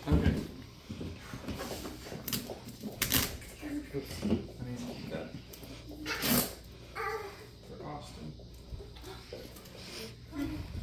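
A duct-taped cardboard box being handled on a table: scattered knocks and rustles, the sharpest about three seconds in and again about six seconds in, with faint voices underneath.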